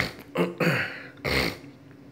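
A man laughing: about three short breathy bursts in the first second and a half, then it dies away.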